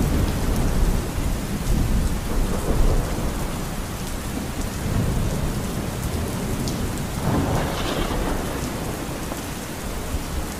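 Steady rain with low rolling thunder, the rumble heaviest in the first few seconds. About seven seconds in, a short louder swell rises over the rain.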